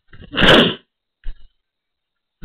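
A person sneezing once, close to the microphone, followed about a second later by a brief handling knock.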